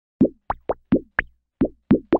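A run of seven quick cartoon plop sound effects for an animated logo, each a short bloop that rises in pitch and dies away at once, unevenly spaced.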